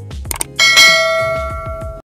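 Subscribe-animation sound effects: two quick clicks, then a bell ding about half a second in. The ding rings on with several tones and slowly fades before cutting off suddenly, over background music with a low beat.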